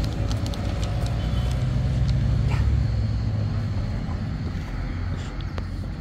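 Low rumble of a car passing on a nearby road, loudest in the first few seconds and then slowly fading away.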